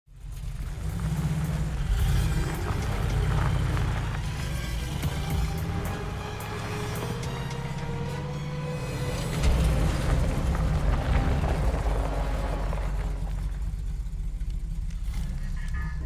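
Film score music over the engine of a 1969 Chevrolet Camaro muscle car as it drives off across a gravel yard.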